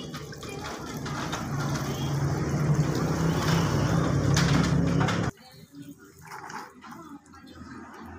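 Rinse water pouring and splashing out of a tilted plastic bucket over a hand as washed cardamom pods are drained, growing louder and then cutting off suddenly about five seconds in; quieter, irregular splashing follows.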